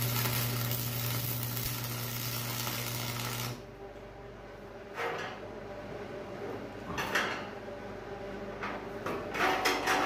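Arc welding steel, a steady crackling hiss over a low electrical buzz, cuts off abruptly about three and a half seconds in. A few brief knocks and scrapes follow.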